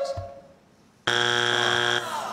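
A game-show buzzer sounds about a second in: a sudden, steady electric buzz that holds for about a second, the signal of a contestant buzzing in to answer.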